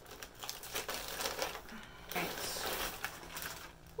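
Plastic poly mailer bag crinkling and rustling as it is cut open with scissors and the plastic-wrapped shirt inside is pulled out.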